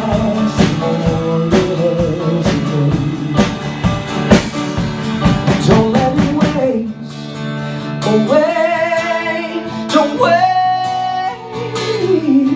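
Live pop-rock song played by acoustic guitar, piano and drum kit with a male lead singer. The full band plays with steady drum hits until about seven seconds in, when the drums drop out and the music quiets. The singer then holds long notes with vibrato over the guitar and piano.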